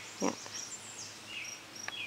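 Outdoor background of birds chirping in short, falling notes, with insects calling faintly underneath.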